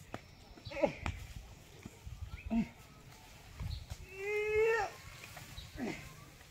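A goat bleats once, about four seconds in, for about a second, with a steady wavering pitch. Around it are quieter rustles and knocks of a dry straw bundle being lifted and handled.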